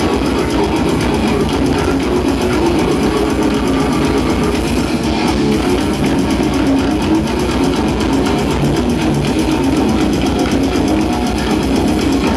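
Live death metal band playing loud and without a break: heavily distorted electric guitars over fast, dense drumming, heard through the stage PA.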